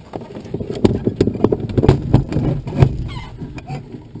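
Glider canopy being pulled down and latched: a quick, irregular run of knocks, clunks and clicks from the canopy frame and its locks.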